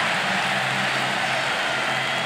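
Stadium crowd cheering a home-team touchdown: a steady wash of crowd noise with no single standout sound.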